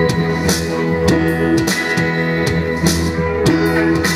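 Live rock band playing an instrumental passage: electric guitars, electric bass and drums with a steady beat, no singing yet.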